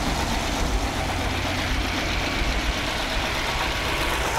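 Small-block Chevy V8 running steadily on an engine stand with its oil pan lowered, the crankshaft turning without sitting in oil.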